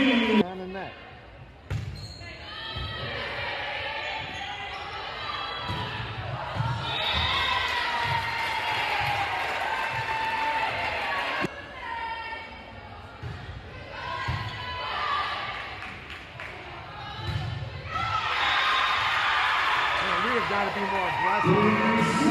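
Volleyball thudding on a hardwood gym floor and being struck, a few sharp hits through the stretch, under steady voices of players and spectators in a large gym; the voices grow louder near the end.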